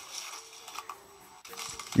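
Quiet room noise with a faint steady hum and a few light clicks.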